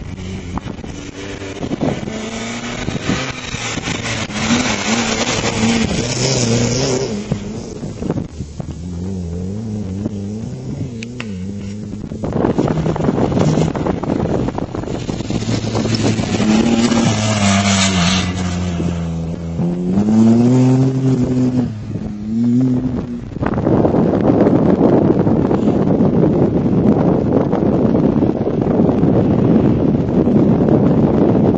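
Off-road rally vehicles' engines revving hard, the pitch climbing and dropping again and again as they shift through gears, with a louder, closer pass in the middle. In the last several seconds the engine gives way to wind buffeting the microphone.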